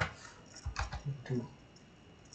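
A few keystrokes on a computer keyboard: a sharp click right at the start and a few more just under a second in.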